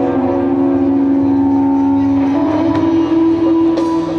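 Live rock band playing an instrumental passage: long held notes that shift pitch a little past halfway, over bass and drums.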